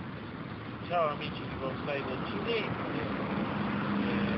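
Steady rushing outdoor background noise with a few brief, faint voice-like sounds, and a low steady hum that joins about three seconds in.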